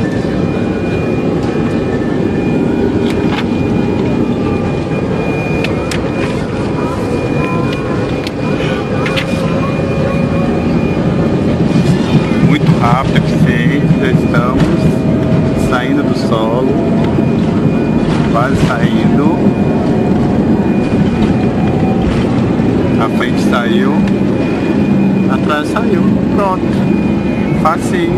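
Airliner jet engines at takeoff thrust heard from inside the cabin during the takeoff roll and liftoff: a steady loud rushing sound with a thin high whine, growing louder about twelve seconds in as the plane speeds down the runway.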